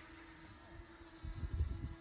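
Faint steady hum of a DJI Mavic Mini drone flying some way off, with a rumble of wind on the microphone in the second half.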